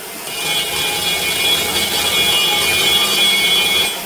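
Die grinder with a carbide porting burr cutting the aluminium of an RB26 intake port. It winds up over the first half second, runs as a steady high-pitched whine over a grinding hiss, and stops near the end.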